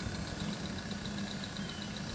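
Ford Mustang's engine idling, heard inside the cabin: a steady low rumble with a fast, even, faint ticking over it.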